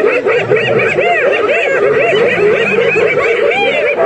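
A group of spotted hyenas giggling: many short calls that rise and fall in pitch, overlapping in a continuous laughing chatter. This is the excited giggling of a hyena clan crowding a lioness.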